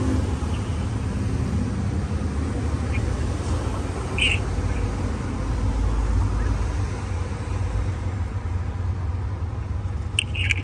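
Street traffic noise: a steady low rumble that swells about halfway through, as a vehicle passes.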